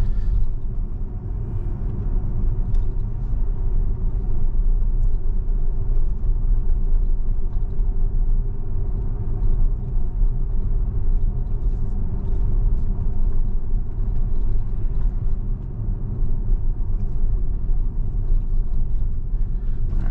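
Steady low rumble of road and tyre noise heard inside the cabin of a Tesla electric car cruising at low city speed, with no engine sound.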